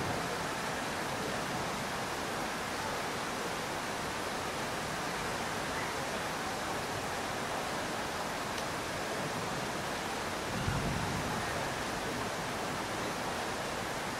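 Steady background hiss of the room and sound system, with one brief low bump about three-quarters of the way through.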